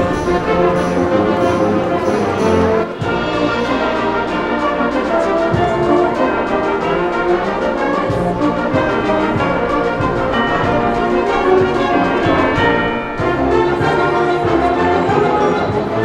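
School concert band playing a piece together, woodwinds, brass and percussion under a conductor.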